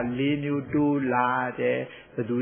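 A Buddhist monk's voice preaching in a chanted, sing-song cadence, holding each syllable on a steady pitch.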